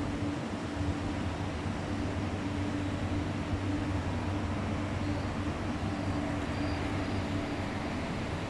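Steady air-conditioning hum in a café: a constant low drone and a faint higher tone over an even hiss of moving air.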